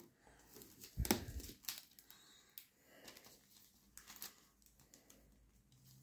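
Faint handling of a cardboard model-car box with a clear plastic window: crinkling of the packaging and a few light knocks, the loudest about a second in, as it is moved and set down on a table.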